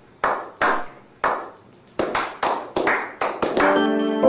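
A person's hand claps, slow at first and then quickening into a rapid run of claps, each with a short ringing tail. Piano music comes in near the end.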